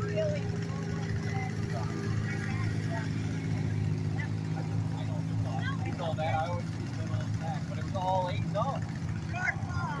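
Small garden tractor engine running at a steady pitch, with faint voices in the background.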